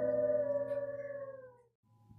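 Wolves howling, several long held tones at once that slide down in pitch and fade out about three-quarters of the way through.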